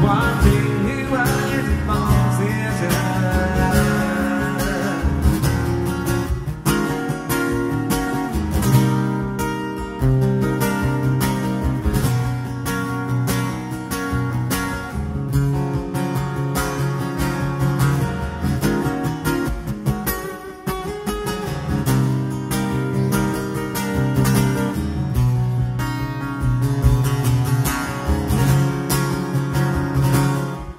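Martin DCME steel-string acoustic guitar strummed in chords, a steady rhythmic strum that runs on without a break.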